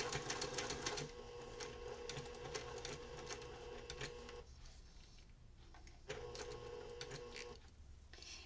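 Electric sewing machine stitching a quilt binding, its motor humming under rapid needle ticks. It stops for about a second and a half midway, runs again briefly, and stops shortly before the end as the seam comes up to a quarter inch from the corner.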